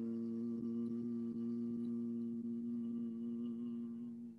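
A man chanting a long Om, holding its closing 'mmm' as a steady low hum on one pitch that fades out near the end.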